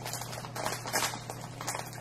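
Light, irregular small clicks and taps of plastic diamond-painting drills being handled on the canvas or tray, several a second, over a faint steady hum.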